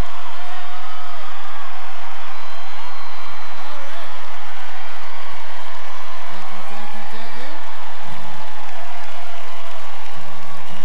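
Large concert crowd cheering and chattering between songs, with scattered shouts and whoops. In the second half a few held guitar notes are picked over the crowd.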